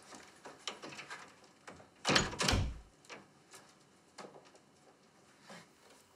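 A door shutting with a heavy thud about two seconds in, amid light footsteps on a tiled hallway floor.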